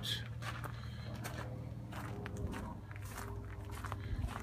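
Footsteps of a person walking on dirt ground, a run of irregular soft crunches over a low steady hum.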